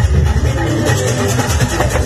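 Live fuji band music with no singing: a heavy, steady bass-guitar line under sharp, frequent percussion hits.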